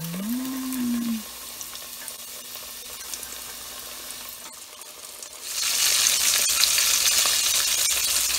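Flour-coated chicken wings deep-frying in hot oil in a stainless steel pot: a soft sizzle at first, then much louder sizzling and crackling from about five and a half seconds in.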